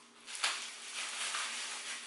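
Plastic-gloved hands rubbing and squeezing hair-dye cream through locs: a sharp rustle about half a second in, then steady rubbing noise with soft pulses.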